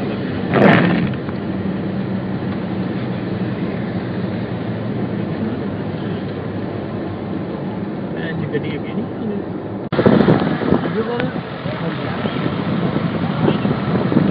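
Car cabin noise while driving on a wet road: a steady engine hum under tyre and road noise, with a brief louder burst about a second in. About ten seconds in the sound drops out for a moment and comes back louder and rougher.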